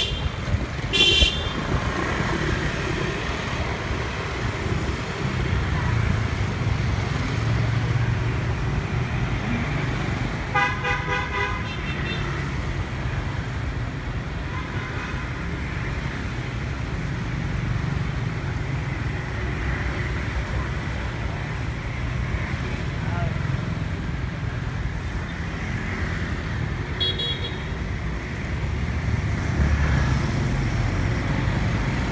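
Night street traffic heard from a moving vehicle: a steady low engine and road rumble, with a short horn toot about a second in, a longer pulsing horn around ten seconds in, and another short toot near the end.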